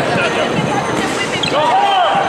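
Dull thuds of taekwondo sparring, kicks landing and feet hitting a wooden sports-hall floor, with spectators' voices and shouts over them, one voice calling out near the end.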